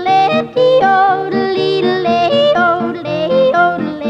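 A woman yodelling, her voice flipping back and forth between low and high notes, over a steady strummed guitar accompaniment.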